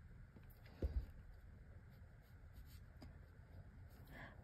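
Near-quiet room tone with one brief, soft low thump about a second in, as a watercolour brush is worked in the paint palette on a wooden table.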